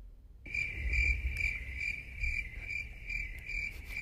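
Cricket-chirping sound effect played as a comedy gag for a joke that fell flat: a steady high chirp pulsing about twice a second, starting about half a second in.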